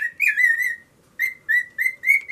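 Cockatiel whistling a quick string of short, wavering notes, with a brief pause just before halfway and then more notes.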